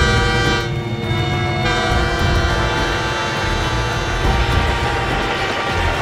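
Train horn sounding one long held chord as the train approaches, followed by the steady rumble of the train passing close by.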